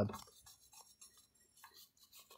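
Faint, scattered scratching of a small brush scrubbing the rusty face of a car's rear wheel hub.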